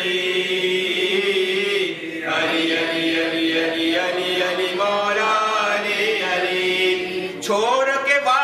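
A man chanting an Urdu devotional poem without accompaniment, holding long notes, with a short break for breath about two seconds in and another near the end.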